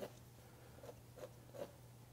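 Faint handling sounds of a comb drawn through a section of wet hair: a few light ticks and rustles, over a low steady hum.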